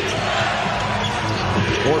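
Basketball dribbled on a hardwood court over steady arena crowd noise.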